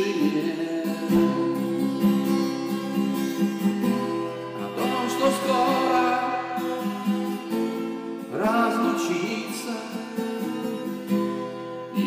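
A twelve-string acoustic guitar played with ringing chords, with a man singing over it in two phrases, one about five seconds in and another a little past eight seconds.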